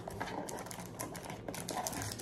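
Foil trading-card packs rustling and clicking against each other and the cardboard of an open retail box as a hand lifts one out: a quick run of light ticks and taps.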